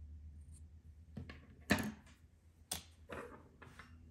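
A few short clicks and knocks, roughly a second apart, with the loudest about halfway in: small scissors snipping a yarn tail and being set down on a tabletop.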